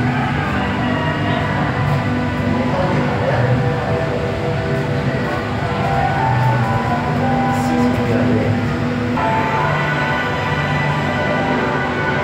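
Music of long, sustained droning chords that shift every few seconds, changing abruptly about nine seconds in.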